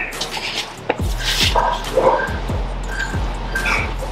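A scuffle: short grunts and groans with several thumps as a man is attacked and knocked to the floor.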